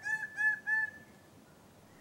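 Male bird-of-paradise calling in courtship display: a quick run of short, repeated call notes, about four a second, that stops about a second in.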